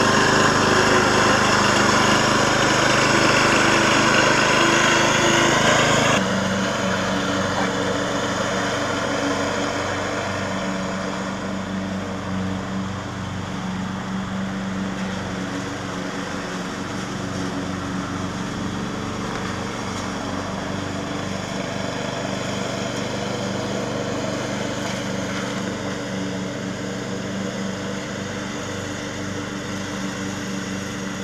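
Small riding-mower engines running. The first six seconds are louder and busier; then the sound changes abruptly to a steadier, quieter engine hum with a faint regular low pulse, typical of the Craftsman II's 13 hp Briggs & Stratton single-cylinder engine mowing nearby.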